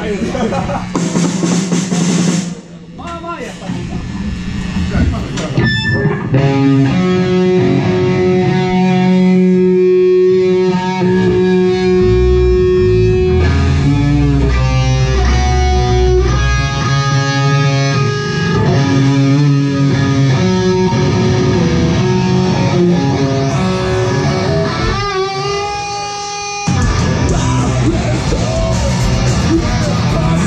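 Live rock band in a club: electric guitars ring out sustained notes over bass in a slow intro, then the full band with drums comes in loudly about a second before the end.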